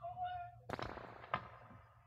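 Two sharp strikes about two-thirds of a second apart, the second leaving a brief ringing tone. A short pitched voice-like sound comes just before them.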